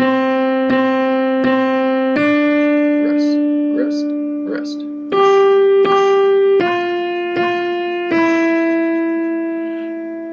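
Online virtual piano (computer-generated piano sound) playing a simple one-note-at-a-time melody: repeated C's, a held D, then G, G, F, F and a held E that fades away near the end.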